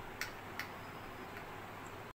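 A metal teaspoon stirring in a ceramic mug, clinking lightly against its side twice within the first second, a few tenths of a second apart.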